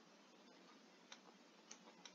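Near silence with two faint, irregular clicks, a stylus tapping on a tablet as a line is drawn.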